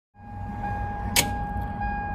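Gas-station background heard from inside a pickup cab at the fuel pump: a steady low rumble with a faint steady tone over it, and one sharp click about a second in.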